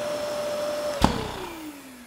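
Bosch GAS 55 M AFC wet-and-dry vacuum running with a steady motor tone. A sharp click about a second in is followed by the motor winding down, its pitch falling and the sound fading.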